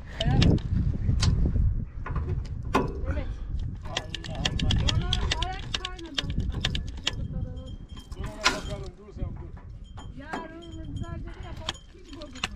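Many sharp metallic clinks and knocks over a low rumble, with muffled voices now and then.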